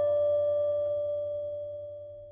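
A single guqin note, plucked just before, ringing on at a steady pitch as a clear, pure tone and slowly fading away.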